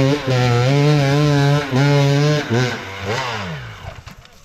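Enduro dirt bike engine revving hard under load as it climbs a steep, loose forest slope, the throttle held high with a few brief breaks. About three seconds in the pitch drops and the sound fades as the bike pulls away up the hill.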